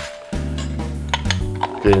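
Background music with steady held bass notes, and a few sharp light clinks from a small glass jar and its lid being handled.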